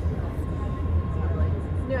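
Steady low rumble inside an MBTA Red Line subway car, with a thin constant tone above it.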